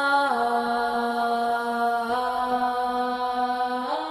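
Live band performance in which a female singer holds long sustained notes; the pitch drops a step about a third of a second in and rises again near the end.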